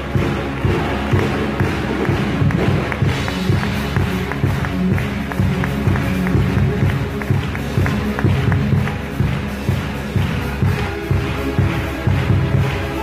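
Loud show music with a steady, driving beat, played through the arena sound system during a circus act.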